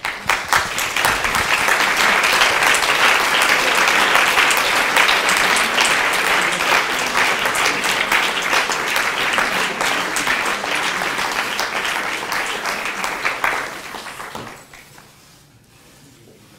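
Audience applauding in an auditorium, starting suddenly and dying away about fourteen seconds in.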